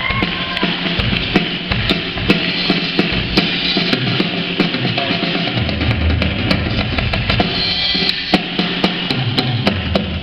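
A drum kit played live: a busy, rapid run of snare and tom strikes over ringing cymbals, with the kick drum coming in heavier about halfway through and again near the end.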